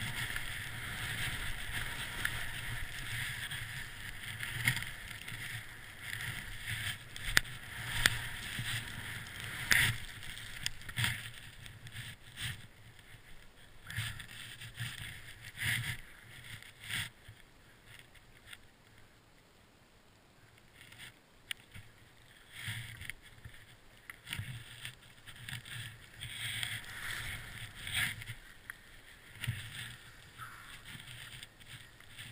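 Skis running through deep powder snow: a continuous hissing swish that rises and falls with each turn, broken by scattered knocks and bumps. It dies down about two-thirds of the way through as the skier slows, then picks up again near the end.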